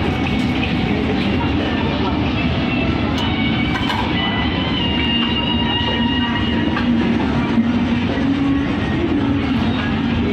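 Shopping-mall ambience: a steady, fairly loud background noise with indistinct voices mixed in.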